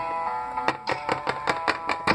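Soft guitar music plays under a quick run of about eight hard plastic taps, starting about a third of the way in: a Littlest Pet Shop figurine being hopped across a hard tabletop as it walks off.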